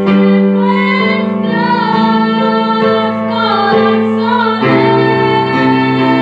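A young girl and a woman singing a worship song together over instrumental accompaniment of sustained chords.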